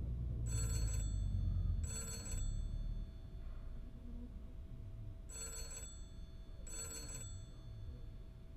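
Old rotary-dial desk telephone's bell ringing in a double-ring cadence: two short rings, a pause, then two more. A low rumble runs under the first three seconds.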